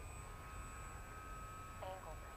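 Faint, thin whine, rising slightly in pitch, of a small electric-motor RC plane's propeller flying far overhead, over a low rumble.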